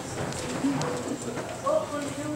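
Low voices of a congregation in a church hall, with scattered knocks and clicks of people moving about and handling books.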